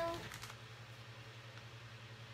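The last syllable of a woman's question trails off, then a pause holding only room tone with a steady low hum.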